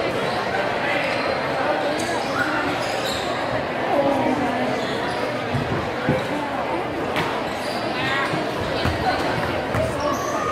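A basketball being dribbled on a hardwood court in a gymnasium, heard through the steady chatter of a crowd of spectators, with a few sharper knocks in the second half.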